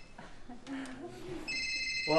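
Mobile phone ringtone: a steady electronic ring of several tones that breaks off and starts again about one and a half seconds in.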